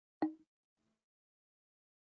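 Near silence, broken once about a quarter second in by a single brief blip.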